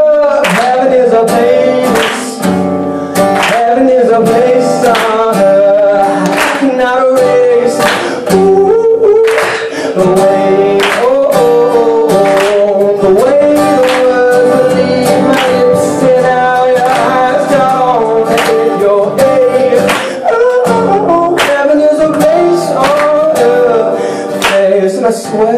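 Male voice singing a melody over a strummed acoustic guitar, live.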